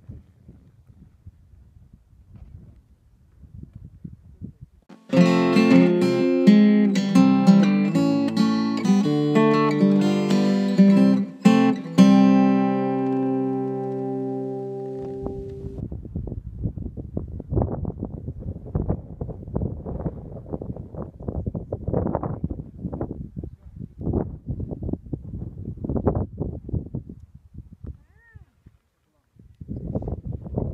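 A short acoustic guitar phrase, plucked notes starting about five seconds in and ringing out by about fifteen seconds. Before and after it, a faint, irregular low rumbling noise.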